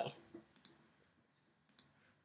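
Faint computer clicks, two quick pairs about a second apart, made while opening the File menu of a Mac app.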